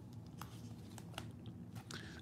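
Quiet room with a few faint, short clicks from a trading card being handled and shifted between the fingers.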